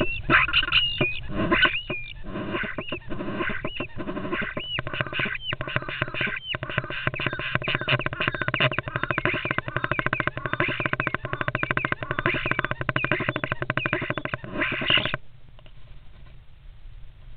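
European starlings fighting in a nest box give harsh, rapid rattling calls, mixed with short whistled notes that are thickest in the first several seconds. The calling stops suddenly near the end.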